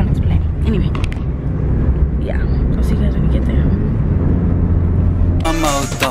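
Steady low rumble of a moving car, engine and road noise heard inside the cabin, with a few brief faint voice sounds. Music cuts in near the end.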